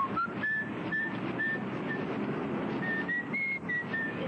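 A series of short, high whistled notes, about two a second, climbing in pitch at first and then holding near one pitch, over a steady noisy background.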